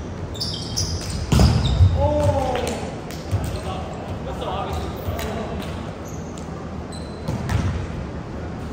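Indoor volleyball play in a gym hall: a loud thump of the ball being hit about one and a half seconds in, sneakers squeaking on the wooden floor, and players shouting to each other, all echoing in the hall.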